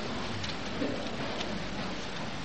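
Steady hiss of background noise, even and without distinct events, in a pause between spoken phrases.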